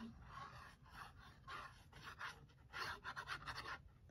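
Faint, short hissing and sputtering of a squeezed liquid glue bottle as its fine tip draws glue across cardstock, thickest in the last second or so.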